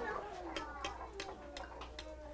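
Faint sharp ticks, about three a second and unevenly spaced, over low background chatter of children's voices.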